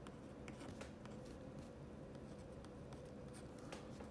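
A Fisher Bullet Space Pen with a Zebra G-301 gel refill writing on a paper pad: faint, light scratches and ticks as the tip strokes and lifts, over a faint steady hum.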